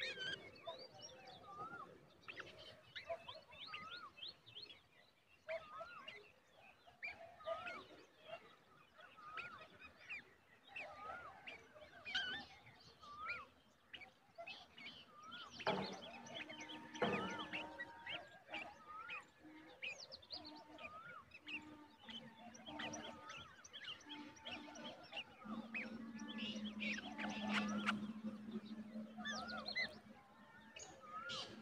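Birds chirping and calling, with one short hooked call repeated a little more than once a second through the first third. A low steady hum joins in near the end.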